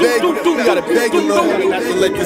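Several overlapping voices, one repeating the phrase "don't do" over and over like a chopped vocal sample.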